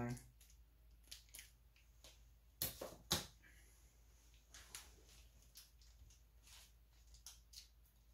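Scissors cutting into small packaging: two sharp snips about two and a half to three seconds in are the loudest, with scattered fainter clicks and snips before and after.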